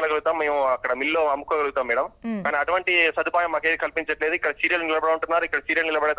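A man talking in Telugu over a phone call, speaking continuously with short pauses.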